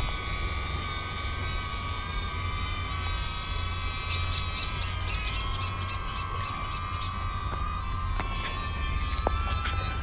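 DJI Neo mini drone's propellers whining in flight: a steady high hum made of several tones over a low rumble, rising slightly in pitch near the end.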